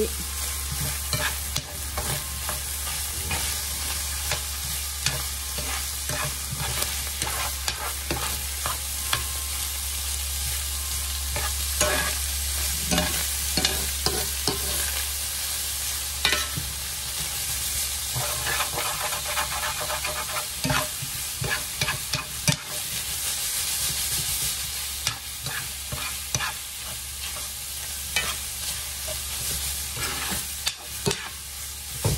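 Ground beef, onion, peppers and carrots sizzling in a cast-iron skillet, with a steady hiss, while a metal spoon stirs them with irregular scrapes and taps against the pan.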